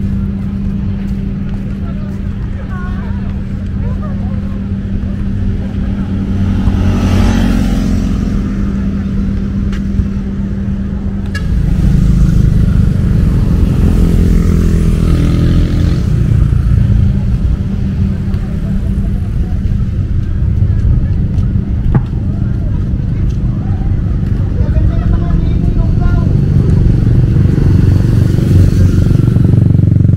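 Motor vehicle noise: a steady low hum, changing about a dozen seconds in to a louder, rougher low rumble, with vehicles passing by twice.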